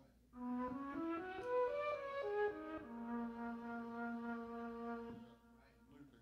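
Keyboard synthesizer played live: a short melodic phrase of distinct notes climbing quickly, then stepping down to one long held low note that stops about five seconds in.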